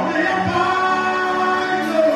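Gospel worship singing by a group of voices, with long held notes.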